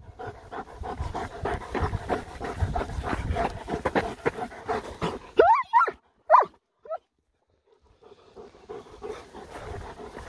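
German shepherd panting heavily right at the microphone, fast and noisy for about five seconds. Around the middle it breaks off for a few short high-pitched sounds that rise and fall, and fainter panting resumes near the end.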